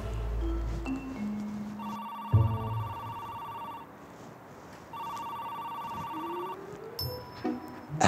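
A mobile phone ringing: two trilling rings of about two seconds each, about a second apart, after a few short notes of light music.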